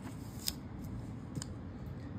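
Paper booklet pages being handled and turned, with two short crisp paper ticks, about half a second and about one and a half seconds in.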